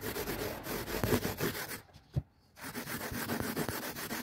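A cloth rag rubbing dark furniture wax into rough pallet-wood boards in quick back-and-forth strokes. The rubbing pauses for under a second in the middle, with one short tap.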